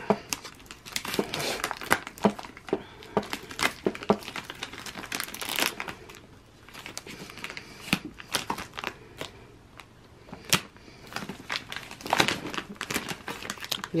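Plastic shipping bag and inner wrapping crinkling and tearing as they are pulled open by hand, in dense irregular crackles that ease off for a few seconds midway, then pick up again.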